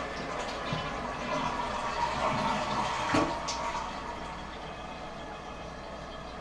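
Toilet flushing, water rushing out of the tank, and the ballcock fill valve running to refill it, with a short knock about three seconds in; the rush eases after about four seconds. This is a test flush after the float arm was bent down to lower the shut-off level.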